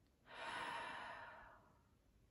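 A woman's single long audible breath, coming up about a quarter of a second in and fading away over about a second and a half: a slow, deep relaxation breath.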